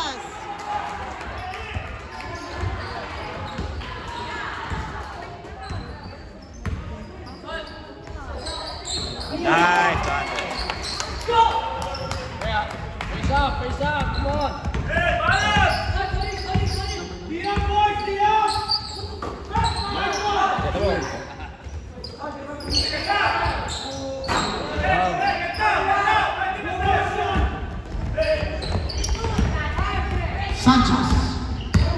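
Basketball bouncing on a hardwood gym floor amid voices shouting and calling out across the court, in a large gym hall.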